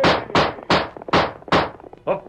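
Radio sound effect of horse hoofbeats: a run of about five sharp clops, evenly spaced a little under half a second apart.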